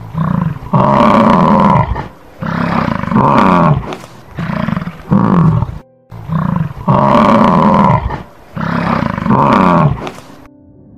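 Lion roaring loudly: a run of about six roars, each a second or so long, with a brief pause about six seconds in.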